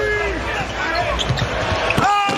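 Basketball bouncing on a hardwood arena court during live play, over steady arena crowd noise.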